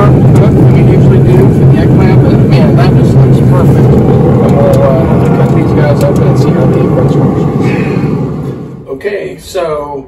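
Loud low rumble of wind buffeting the microphone outdoors, with a man's voice partly buried under it. About nine seconds in the rumble drops away and clearer speech follows.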